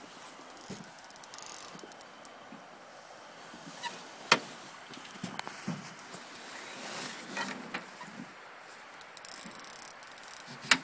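Small knocks and rattles of gear being handled in a boat over a faint steady hiss, with one sharp knock about four seconds in and a few lighter clicks after it.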